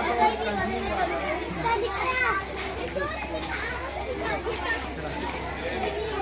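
Many children's voices chattering and calling out at once, overlapping without pause.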